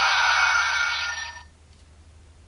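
Kamen Rider W toy transformation belt playing an electronic tune through its small built-in speaker, with a Gaia Memory inserted; it cuts off about one and a half seconds in.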